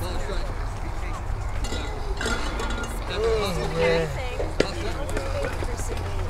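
Background chatter of several voices at a youth baseball game, with one sharp knock about four and a half seconds in.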